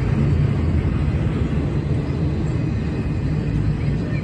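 Double-stack intermodal freight train's well cars rolling past close by: a steady, low rumble of steel wheels on rail.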